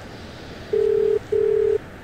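Telephone ringback tone on an outgoing call: a double ring of one steady tone, two short beeps with a brief gap, about a second in. It signals that the called line is ringing and has not yet been answered.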